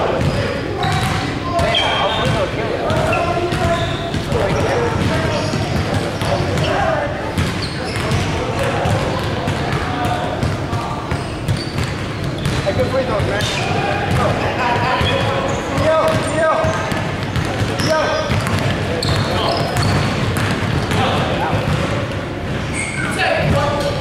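Indistinct voices of players and onlookers talking and calling out on an indoor basketball court, with a basketball bouncing on the hardwood floor now and then.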